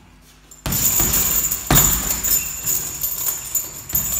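Gloved punches landing on a hanging heavy bag, the first about two-thirds of a second in and the hardest hit a little under two seconds in, with the bag's hanging chains jangling between the hits.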